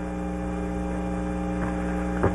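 Steady electrical mains hum in the audio feed: a constant low buzz with a ladder of even overtones that doesn't change.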